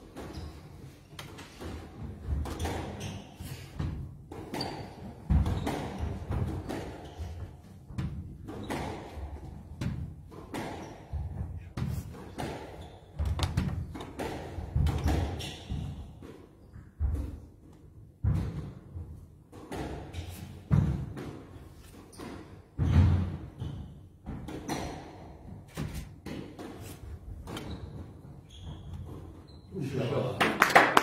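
Squash rally: a squash ball repeatedly struck by rackets and hitting the court walls, heard as a string of sharp hits about a second apart, with heavier thuds mixed in.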